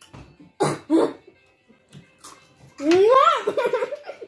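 A child coughing in two sharp bursts about half a second and a second in, with a fainter one later, after eating spicy Takis chips without water. Near the end a long, loud, wavering pitched sound rises and falls.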